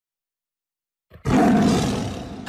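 A lion's roar, a sound effect, starting suddenly a little over a second in and fading toward the end.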